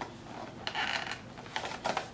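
Long fingernails clicking and scraping on a small cardboard box as it is turned over in the hands, with a few light clicks around the middle and again near the end.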